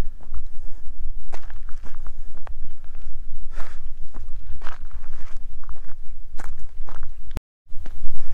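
Footsteps on bare granite rock, walking at about one step a second, over a steady low rumble. The sound cuts out briefly near the end.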